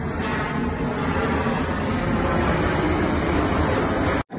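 Jet airliner flying low overhead, its engine noise a steady rush that grows slightly louder.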